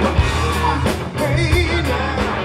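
Live rock band playing: electric guitar, bass and drums, with the singer's voice over them and regular drum hits.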